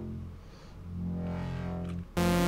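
A Serum software synthesizer patch built on a hand-drawn custom wavetable with unison, playing a low sustained tone through a low-pass filter. The tone dips about half a second in and swells back about a second in.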